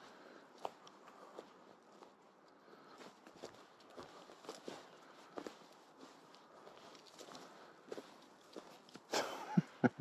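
Faint footsteps on a leaf-strewn forest path: irregular light steps and rustles, with a louder burst of sound about a second before the end.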